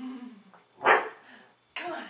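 A dog giving two short barks, about a second in and near the end, after a brief low falling vocal sound at the start.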